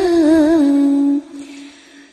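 A single voice chanting Vietnamese verse in a sung recitation style, drawing out the last syllable of a line as one long held note with vibrato that steps down slightly. The note fades out about a second in.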